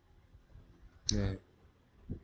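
A few faint computer mouse clicks, with a short sharp click about a second in.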